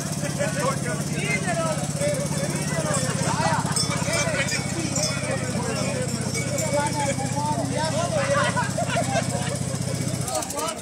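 Ride-on lawn tractor's small engine idling steadily, with people chatting over it.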